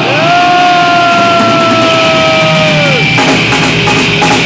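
Thrash metal band playing live and loud: a single high note swoops up and is held for nearly three seconds, then drops away, and drum and cymbal hits start about three seconds in.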